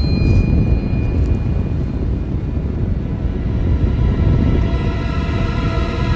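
A loud, deep rumble comes in suddenly at the start and holds steady under ominous orchestral music. Sustained notes of the music swell in near the end.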